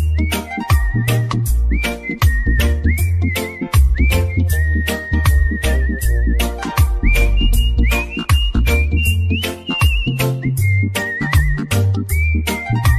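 Instrumental reggae remix of a country song: a steady drum beat and heavy bass line under a high, whistle-like lead melody with vibrato.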